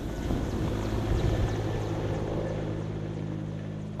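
Mi-8-type military transport helicopter departing low overhead: a steady rotor and turbine hum that slowly fades as it flies away.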